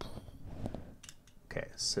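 A few light clicks of small plastic LEGO pieces being handled and fitted together.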